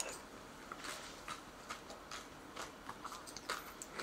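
Someone off-camera chewing a mouthful of chestnut brûlée, faint soft mouth clicks coming irregularly.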